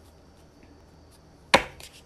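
A single sharp knock about one and a half seconds in, a deck of reading cards tapped down on a wooden tabletop, followed by a few faint card clicks.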